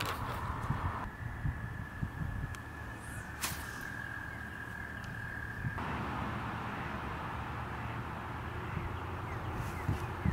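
Outdoor ambience with a fluctuating low wind rumble on the microphone. A thin steady high tone sounds for about five seconds, and a single sharp click comes about three and a half seconds in.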